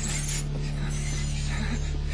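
Horror-film soundtrack: a steady low droning hum with metallic scraping and creaks over it.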